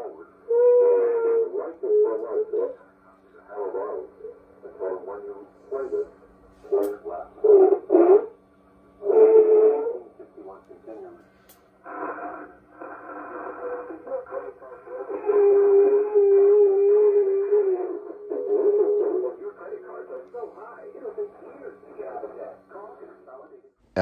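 A 1920s Atwater Kent three-dial TRF radio receiver playing an AM broadcast through its loudspeaker while its dials are turned. Snatches of speech and music come and go with short gaps. The sound is thin and tinny, over a faint steady hum.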